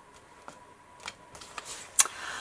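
Paper collage pieces being handled and shifted on a glued page, rustling more in the second half, with a light tap about half a second in and a sharp click near the end.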